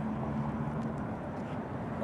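A steady low engine drone with a constant hum, as of motor traffic running nearby.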